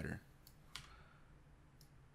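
A few faint, separate clicks of computer keys as code is edited, three in all, the second the loudest.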